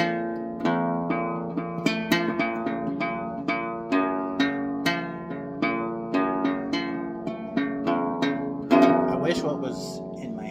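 Acoustic guitar played fingerstyle: a steady run of single plucked notes, two to three a second, with a louder strummed chord near the end.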